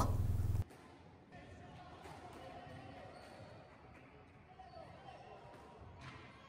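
A steady low hum that cuts off suddenly just over half a second in, then faint squash-hall background: distant voices and a few faint knocks of squash balls.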